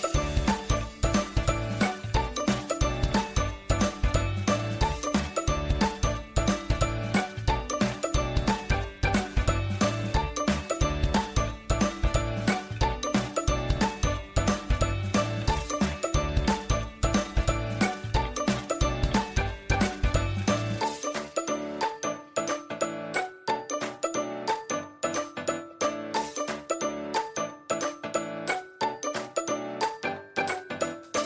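Background music of quick, repeated notes over a steady beat; the bass drops out about two-thirds of the way through.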